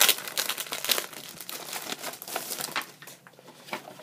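Paper and packaging crinkling and rustling as a folded paper brochure is handled and drawn out of a toy's box. It is a dense run of crackles that thins out in the last second.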